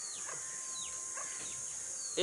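Outdoor ambience: a steady high insect drone, with short descending bird calls repeating several times over.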